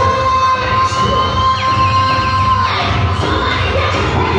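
Gospel praise music played loud, with a steady bass. A woman sings one long high note into a microphone that breaks off about three-quarters of the way through. Shouting and cheering from the congregation run through it.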